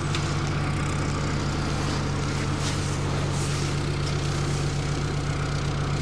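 A wide-beam canal boat's engine idling steadily, a low, even hum with no change in speed while the boat drifts in to moor.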